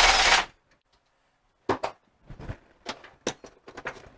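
A short loud rush of noise at the start, then a scatter of light clicks and knocks: tools and the cast transmission case being handled on a workbench as the case is turned over.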